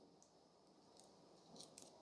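Near silence, with a few faint crackles as the backing is peeled off a thin plastic label-maker label.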